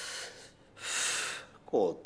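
A man's two noisy gasping breaths, the second louder and longer, then he starts speaking near the end.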